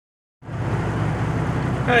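Diesel engine of a 1990 Peterbilt 379 dump truck idling steadily, heard from inside the cab as a low, even rumble.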